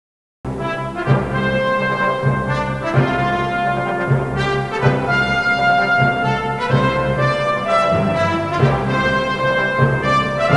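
Orchestral film-score music led by brass, held notes over regular accented beats, starting suddenly about half a second in after silence.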